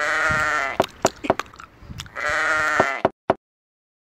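Sheep bleating twice, each call wavering and just under a second long, the second about two seconds after the first, with a few short clicks between.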